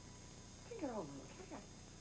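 A person's short wordless vocal sound about a second in, sliding down in pitch, then a briefer one soon after.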